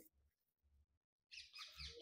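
Near silence for about the first second, then faint, quick bird chirps in the background, repeating several times.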